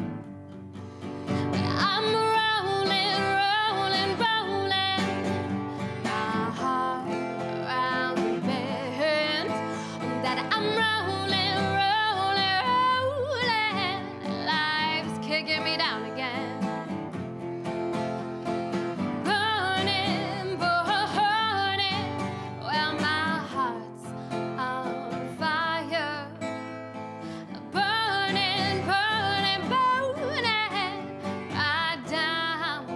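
A woman singing a slow, soulful song live, accompanied by an acoustic guitar. Her held notes waver with vibrato.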